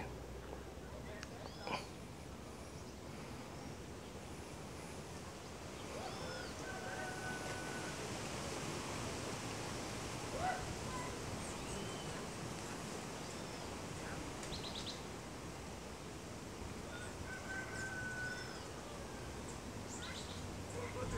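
Faint outdoor ambience with a steady low hiss, broken by scattered short bird calls: quick arched chirps every few seconds and a couple of brief held whistled notes.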